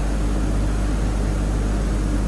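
Steady hiss with a low electrical hum: the background noise of the recording, with no other event.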